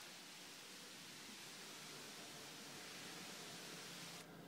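Faint steady hiss of water spraying from a garden hose's multi-pattern nozzle set to its 'center' spray pattern.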